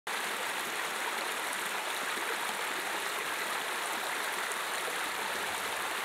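Steady rushing of running water, an even hiss with little low end that cuts in abruptly at the start.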